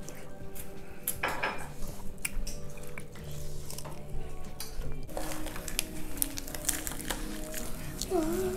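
Light clinks and taps of chopsticks and dishes at a table, over quiet background music with held notes that change a couple of times.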